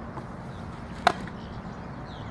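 A single sharp smack about a second in: a thrown softball landing in a leather fielding glove.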